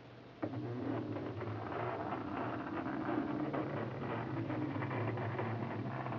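A Hexbug bristlebot's small vibrating motor buzzing steadily as the bot shuffles across a board of laser-cut acrylic pieces, with a rapid patter of small clicks as its peg knocks the pieces. The buzz starts suddenly about half a second in.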